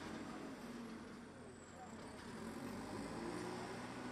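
Faint outdoor ambience: a vehicle engine running steadily at low revs, with distant voices and a thin high whine that falls in pitch over the first two seconds.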